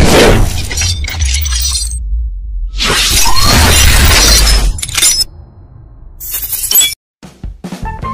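Intro sound effects over music: a loud shattering-glass impact hit at the start and another about three seconds in, over a low rumble. The hits fade away, there is a brief dropout, and a few sharp clicks come near the end.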